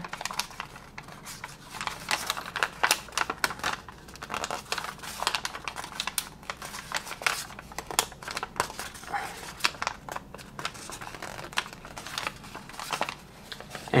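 A sheet of pre-creased origami paper crackling and crinkling under the fingers as small creases are pinched around a square of the grid: a run of quick, irregular crackles.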